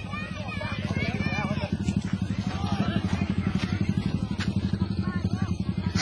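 A small engine running steadily with a fast, even pulse, with people talking faintly over it.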